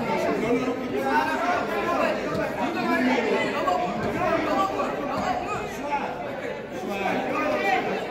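Indistinct chatter of many voices talking at once in a gymnasium, with a hall echo.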